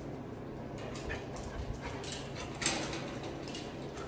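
Ceiling-mounted electric fan heater running with a steady low hum, set high and blowing heat. Light scattered clicks and one short clatter about two and a half seconds in.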